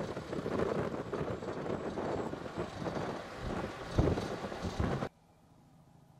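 Wind buffeting the microphone over the road noise of a vehicle driving on a dirt road, with a sharp jolt about four seconds in. The sound cuts off abruptly about five seconds in.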